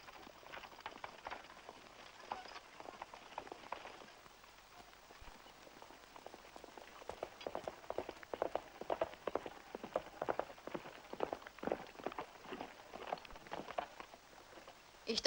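Hoofbeats of a horse, a quick irregular clatter of hooves, faint at first and growing louder through the second half as the horse comes closer.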